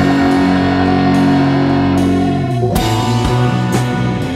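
Instrumental passage of a rock song: a held chord rings for about two and a half seconds, then a loud crash brings the full band back in with a steady drum beat.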